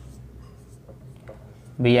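Felt-tip marker writing on a whiteboard: faint, irregular strokes of the tip on the board.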